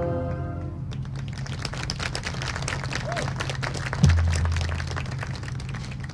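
A marching band's held brass chord cutting off under a second in, followed by a crowd clapping and applauding from the stands. A single low thump sounds about four seconds in, over a steady low rumble.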